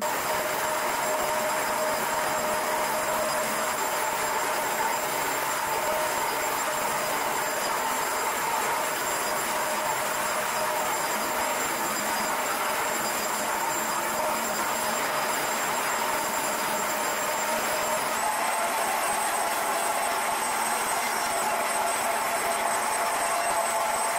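Upright carpet cleaner running, its suction motor making a loud, steady whooshing noise with a high whine. Near the end the whine steps up slightly in pitch.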